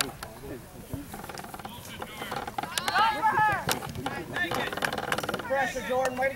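Voices shouting across an open soccer field during play, several calls overlapping, loudest about halfway through and again near the end.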